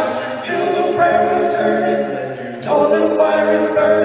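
Men's quartet singing a cappella in four-part harmony through microphones, holding sustained chords that move to new ones twice.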